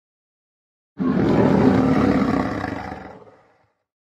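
A lion's roar as an intro sound effect: it starts suddenly about a second in and fades away over the next two and a half seconds.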